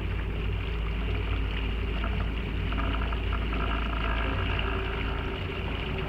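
A small boat's motor running steadily under way, a low, even hum that holds throughout.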